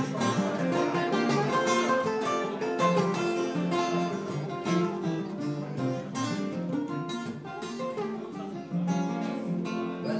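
Three acoustic guitars playing an instrumental passage together, with busy strummed chords and ringing picked notes.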